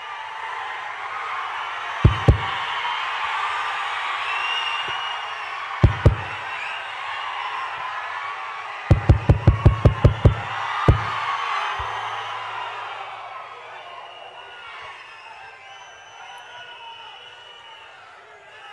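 A large crowd cheering and shouting, loud for most of the first twelve seconds and then dying down. Sharp thumps cut through it: two near two seconds in, two near six seconds, a quick run of about eight a little after nine seconds, and one more near eleven.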